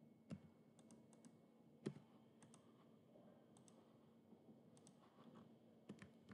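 Near silence with a few faint, sharp clicks of a computer mouse and keyboard, the loudest about two seconds in, over a faint steady hum.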